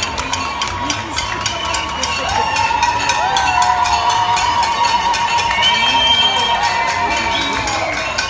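Protest crowd banging metal pots and pans in a fast, steady clatter of strikes, several a second, with voices chanting over it.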